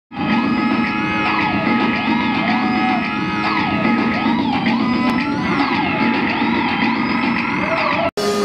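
Harsh electronic noise music played live on synthesizers, including a Korg Volca Bass: a dense distorted wash with steady high tones and wailing pitch glides that rise and fall about once a second. It starts abruptly.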